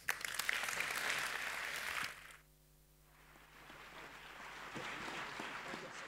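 Audience applauding at the end of a talk, a dense patter of many hands clapping. It is loudest for the first two seconds, drops away sharply, then swells back more softly.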